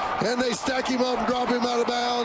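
Television football broadcast audio: a man's voice over steady stadium crowd noise.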